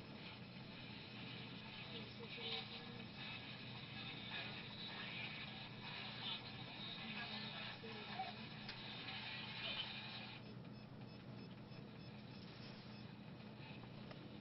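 Ghost-box radio scanner sweeping through stations: a choppy run of static broken by short snatches of broadcast voice and music, cutting off suddenly about ten seconds in, over a steady low hum.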